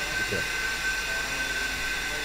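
Steady machinery hum from the running plant in a distillery still house, with a constant high-pitched whine.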